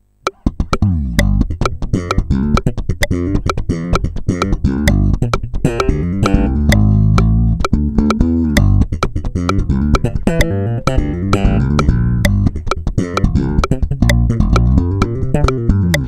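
Electric bass played solo with slap technique at full speed: a fast funk line of thumb slaps, sharp popped strings and muted ghost notes with hammer-ons, starting about a quarter second in.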